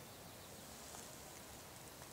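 Near silence: faint, steady outdoor background noise with no distinct sound events.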